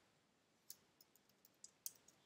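Faint clicks from computer use, about seven light, quick clicks over the second half, against near silence.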